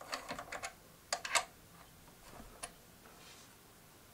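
Allen key clicking against the steel bolts of a bike stem's faceplate as they are loosened: small sharp clicks in quick clusters during the first second and a half, then one more a little over halfway through.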